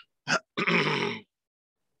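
A person clearing their throat loudly: a short catch about a quarter second in, then a longer rasping clear lasting most of a second.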